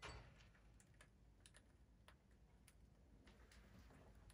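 Near silence with faint, scattered light clicks, and a brief soft rustle at the very start.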